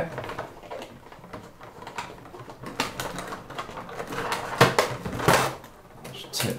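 Hands handling a headset in a clear plastic packaging tray: light plastic rustling with a few sharp clicks and taps, the loudest two near the end.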